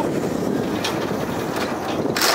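Sidecar motorcycle coasting downhill with its engine switched off: steady tyre and road noise with wind on the microphone, and a couple of light knocks from the rig.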